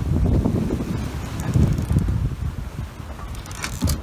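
Wind buffeting the microphone in uneven gusts on an open yacht deck at sea, with a brief rustle near the end.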